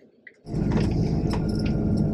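Motorhome engine and road noise inside the cab, a steady low drone with small rattles, coming in abruptly about half a second in after near silence.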